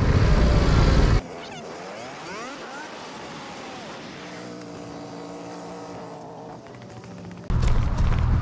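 Wind and road noise from a moving motorcycle's helmet camera for about a second, cut off suddenly. Then quiet music, first gliding notes and then held tones, until the wind noise comes back near the end.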